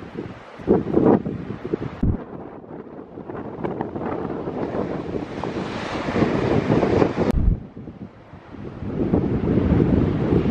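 Wind buffeting the microphone in irregular gusts, with the wash of surf breaking on a sandy beach underneath. There is a brief lull about three-quarters of the way through.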